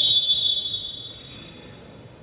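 Referee's whistle blown once in a wrestling hall: a shrill, high blast that fades out over about a second, stopping the action between the wrestlers.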